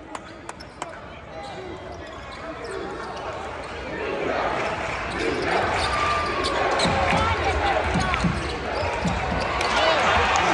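Basketball dribbled on a hardwood court with sneakers squeaking, over the chatter of an arena crowd. The crowd noise swells about four seconds in as play moves toward the basket.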